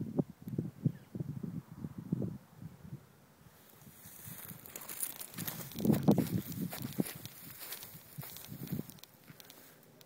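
Footsteps through dry grass and brush, with stems rustling and crackling against the walker. The first couple of seconds are mostly irregular low steps; from about three and a half seconds in, a steady brushing rustle joins them, with a burst of heavier steps around the middle.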